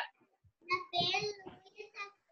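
A young girl's voice, heard over a video call, speaking in a sing-song way for about a second, starting about half a second in.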